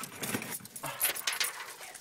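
Keys hung on a wooden stick jangling and clinking irregularly as the stick is shaken by hand.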